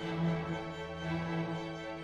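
A school string orchestra playing long, sustained bowed notes together.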